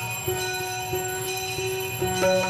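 Devotional aarti music with temple bells ringing: held notes that step from one pitch to the next every half second or so, over a steady accompaniment.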